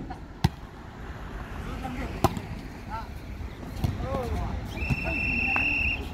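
A referee's whistle blown in one steady, high blast lasting a bit over a second near the end: the signal to serve. Earlier there are two sharp knocks, a volleyball bounced on the hard court by the server, with distant voices around.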